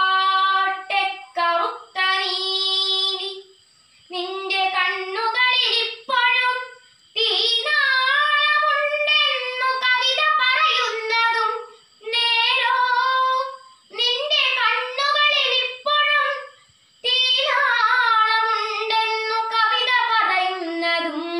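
A girl singing a Malayalam poem unaccompanied, in the melodic chanted style of kavithaparayanam recitation, in phrases of a few seconds broken by short pauses for breath.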